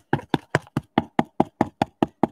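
Dry quarter-inch scruffy brush being pounced over and over onto a plate palette, a steady rapid tapping of about five taps a second. It is the sound a properly dry scruffy brush should make when pouncing.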